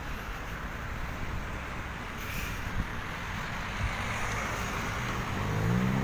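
Street traffic noise: a steady background of road noise, with a car engine rising in pitch near the end.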